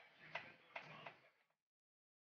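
Faint clicks with light rustling: three sharp clicks within the first second, cutting off abruptly about a second and a half in.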